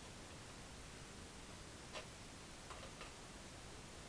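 Faint hiss with three soft, irregular clicks about halfway through: a palette knife touching and tapping on the canvas as light paint is laid on.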